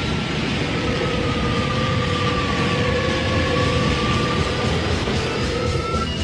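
Cartoon sound effect of swirling magical energy: a steady, dense rushing roar with two long held tones over it.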